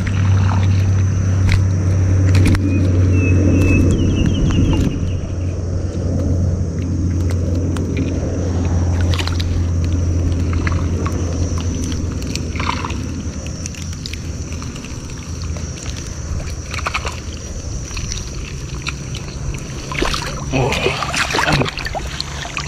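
Shallow floodwater sloshing and splashing as a gill net with fish in it is handled and pulled through it, with scattered knocks. A steady low hum runs underneath, loud for the first half and fading after, and a faint steady high whine sits over it.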